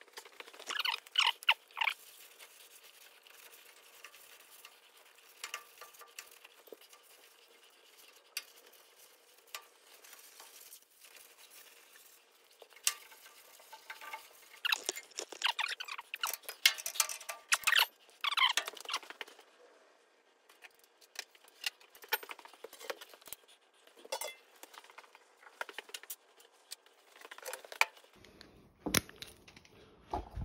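Intermittent rubbing and scraping with small metallic clinks from hand-cleaning around the underside of a mini excavator's engine bay, in bursts about a second in and again from about 14 to 19 seconds.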